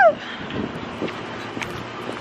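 Steady outdoor background noise, a hiss of wind or distant traffic, with a couple of faint clicks. A high exclamation trails off at the very start.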